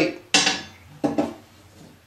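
Metal cover plate taken off a tube receiver's chassis being set down: a sharp metallic clank about a third of a second in that rings briefly, and a second, weaker clank about a second in.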